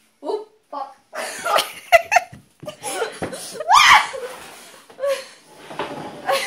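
Hearty laughter in repeated bursts, with a few sharp knocks about two and three to four seconds in.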